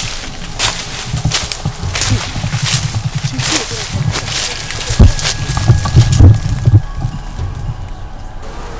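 Footsteps crunching through dry leaf litter in irregular crackles, thinning out in the second half, with a low thump about five seconds in, over a low background music bed.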